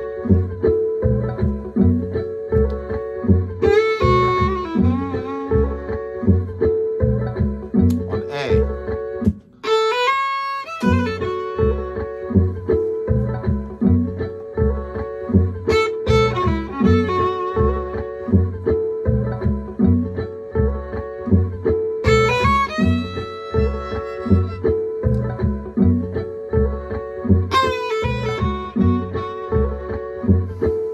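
Violin playing short blues phrases in F sharp, one every few seconds, with gaps between them for the listener to play each phrase back. Underneath runs a guitar backing groove with a steady low pulse, which drops out for a moment about nine seconds in.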